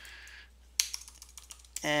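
Typing on a computer keyboard: a quick run of keystrokes about a second in.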